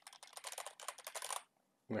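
Fast typing on a computer keyboard: a quick run of keystrokes that stops about a second and a half in.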